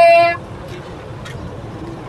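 A vehicle horn blast cuts off about a third of a second in. Steady outdoor traffic and crowd noise follows, with a couple of faint clicks.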